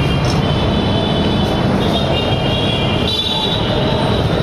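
Belt-driven three-piston HTP pressure pump and its 2 HP single-phase electric motor running steadily.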